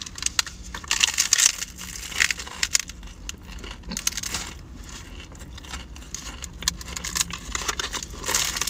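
Paper pie sleeve crinkling and the crisp crust of a fried apple pie crunching as it is bitten and chewed: irregular runs of crackles and rustles in several bursts.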